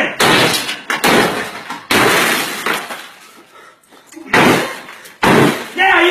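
A glass coffee-table top shattering as a game console lying on it is struck: three crashes of breaking glass in the first two seconds, a lull, then two more sharp bangs near the end.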